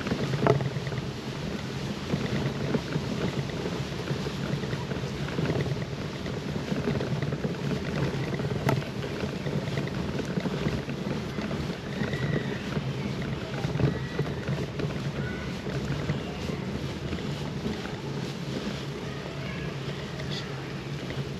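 Steady rumble of a bicycle riding along a gravel path: tyres rolling over the loose surface, with wind buffeting a handlebar-mounted microphone.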